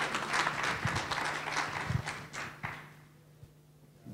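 Audience applauding, the clapping dying away about three seconds in.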